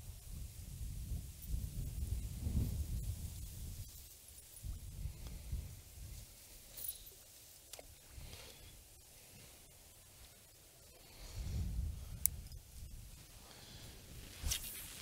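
Wind gusting on the microphone as a low rumble that rises and falls, strongest in the first few seconds and again near the end, with a few faint clicks and one sharper tick about twelve seconds in.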